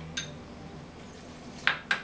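Barware clinking against a stainless steel cocktail shaker tin as lemon juice is measured in: a light clink just after the start, then two sharp clinks near the end.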